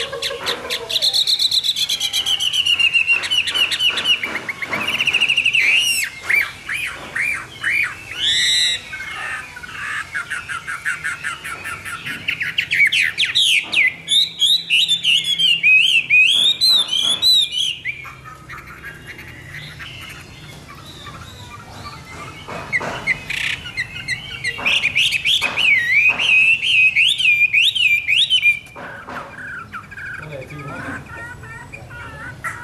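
Chinese hwamei singing a loud, varied song of rapid whistled notes that slide up and down. It pauses for a few seconds a little past the middle, then resumes.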